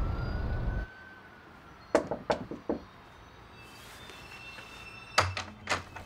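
Knocking on a door: a quick run of about four knocks about two seconds in, then another cluster of knocks and thuds near the end.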